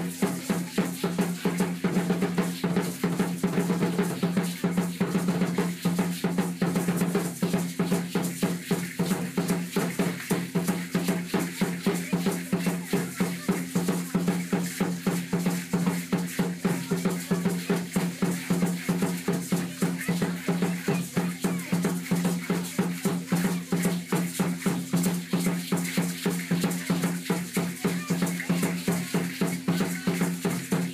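Huehuetl, a tall upright wooden drum, beaten in a fast, steady Aztec dance rhythm of about four strokes a second, its low tone ringing between strokes, with the rattling of the dancers' ankle rattles.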